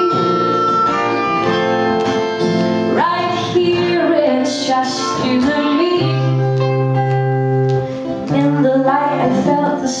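Melodica playing a melody with held notes over a strummed acoustic guitar, an instrumental passage; a woman's singing voice comes in right at the end.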